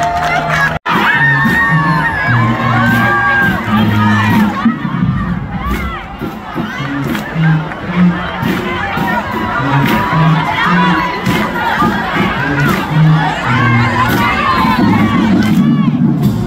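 Crowd in the stands cheering and shouting over music with a moving bass line. The sound cuts out for an instant about a second in.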